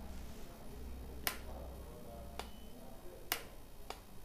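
A few sharp clicks, about a second apart, from a plastic electric kettle being handled, over a low steady hum.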